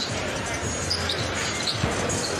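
Steady arena crowd noise with a basketball bouncing on the hardwood court during live play.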